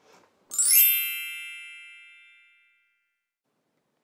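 A bright, bell-like chime about half a second in: a quick upward sweep of high ringing tones that then fades away over about two seconds.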